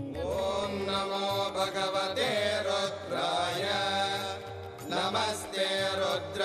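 A Hindu devotional mantra chanted melodically over music with steady sustained tones beneath it. A new sung passage begins right at the start.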